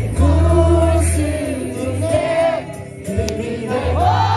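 Live concert music through loudspeakers with a heavy bass line, and a crowd singing along loudly. The bass drops out briefly about three seconds in, then comes back.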